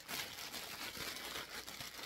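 Clear plastic bags of small white artificial pumpkins crinkling and rustling steadily as they are handled.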